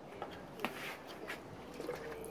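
Plastic squeeze bottle squirting fire-starting liquid onto wood pellets: a few short, soft squirts and crackles.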